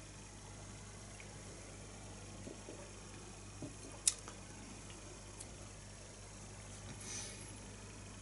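Quiet room tone with a steady low hum, a few faint ticks, one sharp click about four seconds in and a soft breath-like hiss near the end.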